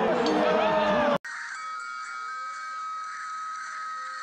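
An amplified voice echoing in an arena, cut off abruptly about a second in. Quieter music with long held notes follows.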